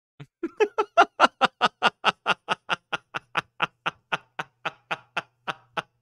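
A man laughing hard in a long run of quick, even 'ha' bursts, about four or five a second, loudest early on and tapering off toward the end.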